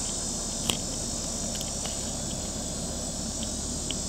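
Steady high-pitched insect chorus over a low, even hum from the idling 3.0-litre straight-six of a 2006 BMW Z4 3.0i, with a few faint clicks.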